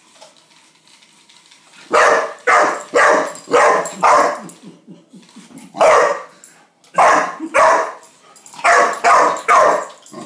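A young dog barking, about a dozen sharp barks in quick runs of two to five, starting about two seconds in.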